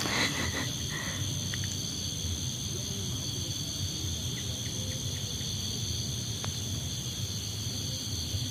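Steady chorus of night insects such as crickets: an unbroken, high-pitched trilling at two pitches.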